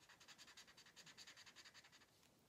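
Felt-tip marker scribbling on paper, colouring in a shape with quick, even back-and-forth strokes, several a second; faint.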